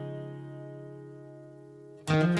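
Song intro: a single guitar chord left ringing and slowly fading.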